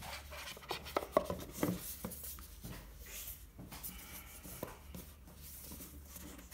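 A black rigid cardboard gift box being handled and folded shut: cardboard rubbing and sliding against hands and board, with a few light knocks, the sharpest about a second in.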